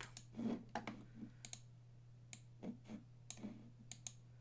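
Computer mouse clicking: several short, sharp clicks at irregular intervals, over a faint steady low hum.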